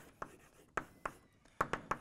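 Chalk writing on a chalkboard: a quick series of short taps and scratchy strokes as letters are drawn, in a small reverberant room.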